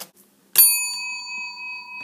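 A single bell-like ding, struck once about half a second in and ringing on as it slowly fades: a message-alert chime signalling that a new message has arrived.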